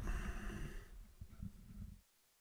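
Faint low rumble with breath-like noise on the microphone, fading away over the two seconds, with a few faint ticks near the middle.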